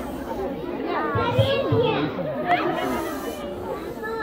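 A crowd of young schoolchildren talking and calling out all at once, a steady hubbub of many overlapping voices.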